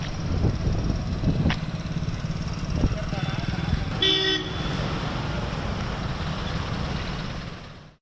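Street traffic sound with a steady low rumble and one short car horn toot about four seconds in. The sound fades out near the end.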